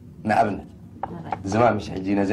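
A man's voice laughing and talking, with a few quick clicks about a second in.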